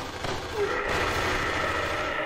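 Two-way radio static: a steady hiss with a faint garbled hum, after the radio call's key-up beep.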